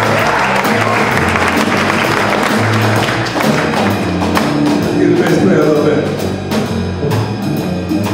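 Live jazz trio of double bass, drum kit and electric guitar playing, the bass walking in stepped low notes under the guitar line, with regular cymbal strokes in the second half.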